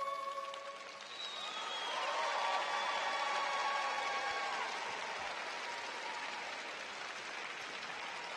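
Arena audience applauding at the end of a figure skating program. The last notes of the music fade in the first second, and the applause swells about a second in and holds.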